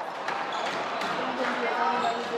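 Squash ball being struck and hitting the court walls during a rally: several sharp knocks ringing in the hall, with faint voices behind.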